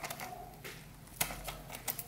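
Plastic squeeze tubes of coloured glue being squeezed by hand, giving a few sharp plastic clicks and crackles.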